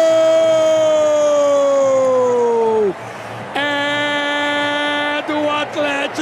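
Brazilian football TV commentator's drawn-out goal cry: one long held shout of "Gol" that sags in pitch and ends about three seconds in. After a breath comes a second long held shout, breaking into excited speech near the end.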